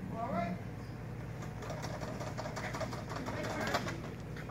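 Indistinct talking over a steady low hum, with a short rising pitched sound just after the start.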